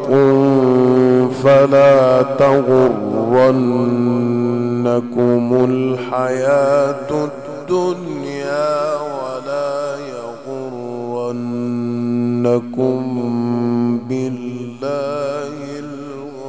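Male Quran reciter in the melodic mujawwad style, holding long ornamented notes with a wavering vibrato into a microphone. The line sinks gradually in loudness toward the end.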